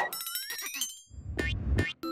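Cartoon sound effects: a rising springy glide, then a low rumble with a couple of knocks that cuts off suddenly.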